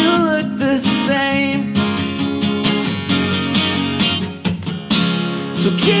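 Steel-string acoustic guitar strummed steadily in a solo acoustic song, with a man's sung note or two near the start.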